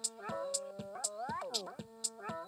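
Electronic music: synthesizer tones that hold and then slide up and down in pitch, over a high ticking beat about twice a second.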